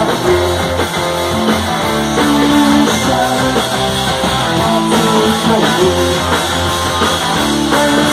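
Live rock band playing an instrumental passage, led by electric guitars over bass and a steady low end, at loud, even volume.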